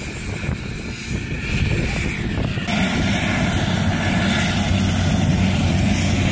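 Helicopter running on the ground with its rotor turning, a steady engine rumble and hum that gets louder and brighter a little under halfway through.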